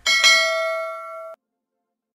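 A bell-like chime struck twice in quick succession near the start. It rings on with several steady tones that fade slowly, then cuts off suddenly about a second and a half in.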